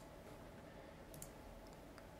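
Near silence: faint room tone with a few faint computer mouse clicks, one right at the start and a couple more over the next two seconds.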